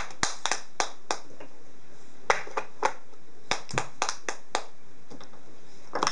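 Wooden peg-puzzle pieces clacking against the wooden puzzle board and tabletop as they are handled: about fifteen short, sharp knocks at an uneven pace, some in quick pairs.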